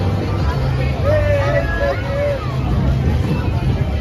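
Crowd chatter with a steady low hum underneath. A single high-pitched voice stands out for about a second and a half, starting about a second in.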